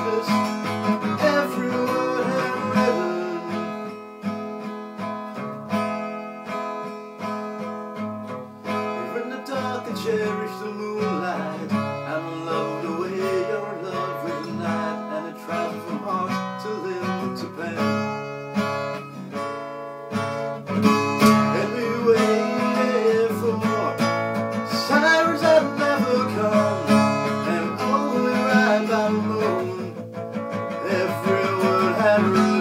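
Steel-string acoustic guitar with a capo, strummed in steady chords. The strumming eases off and is quieter through the middle, then picks up louder again from about 21 seconds in.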